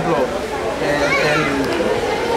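Voices of people talking in the background, children's voices among them; no drum is struck.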